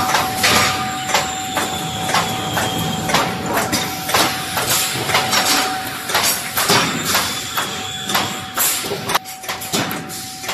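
A 16 mm BRC reinforcing-mesh welding machine running: irregular metal clanks and knocks, a couple a second, as bars are fed and welded, over a steady whine that drops out briefly about six seconds in.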